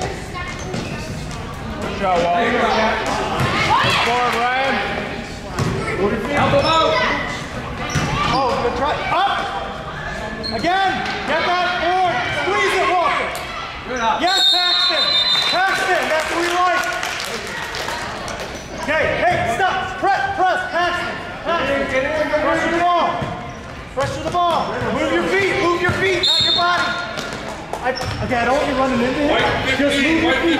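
A basketball bouncing and dribbling on a gym floor, with sharp knocks echoing in a large hall. A short, high whistle blast sounds about halfway through.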